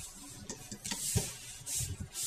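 Hands rubbing and shifting rubber bands on the clear plastic pegs and base of a Rainbow Loom: soft scraping rubs, strongest about a second in and again near the end, with a light click in between.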